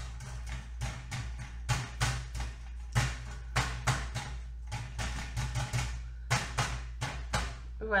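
Alcohol ink applicator with a felt pad being dabbed again and again onto thin metal tree cutouts. It makes irregular sharp taps, about two or three a second, over a steady low hum.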